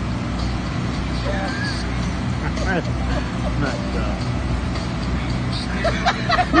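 Steady low mechanical hum with faint, indistinct voices over it.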